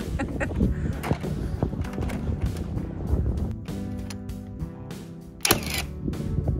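Background music, with one sharp bang near the end from a Milwaukee Fuel cordless framing nailer firing a nail into a stud.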